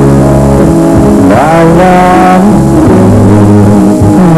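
A man and a woman singing a duet with band accompaniment; a voice slides up to a long held note about a second and a half in.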